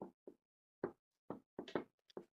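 Marker pen writing on a whiteboard: a handful of short tapping and scraping strokes, about five in two seconds, separated by silence.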